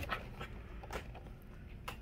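Quiet handling of boxed Funko Pop vinyl figures on a counter, with a faint tap about a second in and another near the end as one box is stacked on another.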